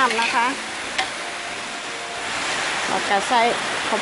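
Chicken and vegetables sizzling in a hot wok as they are stir-fried with a metal spatula, a steady hiss, with one sharp tap of the spatula against the wok about a second in.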